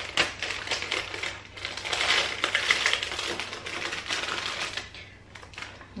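Crinkly plastic biscuit packet being torn open and handled, a dense crackle of fine clicks that thins out and fades near the end as the plastic tray is pulled out.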